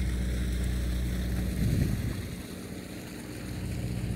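Steady low hum of machinery from a moored fishing boat, with wind rumbling on the microphone that swells briefly near two seconds and then eases.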